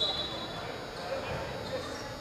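Indistinct voices echoing in a large gym, with a few faint knocks of a volleyball bouncing on the hardwood court.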